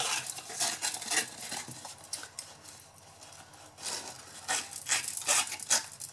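Cardstock box and satin ribbon being handled close to the microphone: irregular paper rustles and light taps as the ribbon is worked back through the punched holes, with a quieter spell in the middle.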